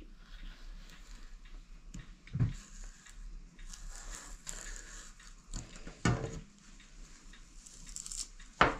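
Hand-turned spiral potato cutter being twisted through a raw potato: faint, irregular crunching and scraping of the blade in the potato, with two louder soft knocks.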